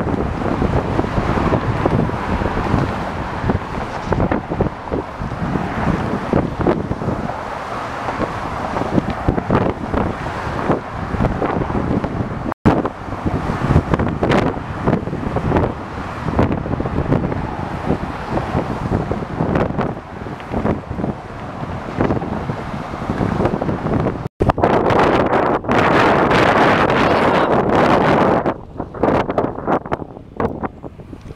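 Wind buffeting the microphone of a camera carried on a moving bicycle, over car traffic running alongside. The sound drops out abruptly twice, where the footage is cut.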